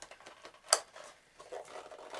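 Hands working the clip-on front cap of an Avon S10 respirator to pull it off: faint handling and rubbing of rubber and plastic, with one sharp click under a second in.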